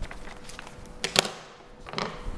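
A few light clicks and a brief rustle as a plastic piping bag and nozzle are handled and set down on a steel worktop, the loudest click about a second in, over a faint steady hum.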